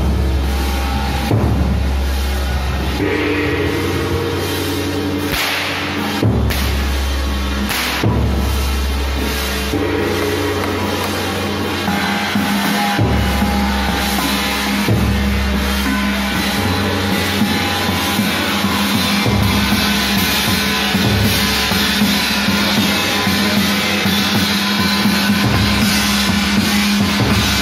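Chinese temple ritual music, played without a break, with a hand drum and a gong being beaten.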